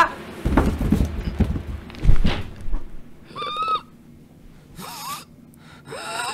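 Dull thuds, the loudest about two seconds in, as a boy is knocked to the floor and winded. Then two short, high, strained gasps as he fights for breath.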